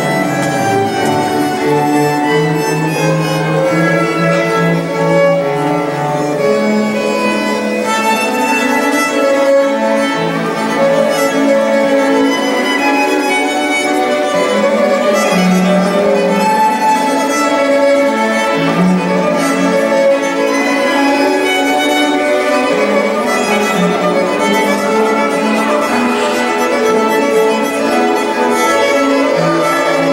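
String quartet of violins and cello playing a continuous passage, bowed notes changing steadily, the violins carrying the upper line over the cello's lower notes.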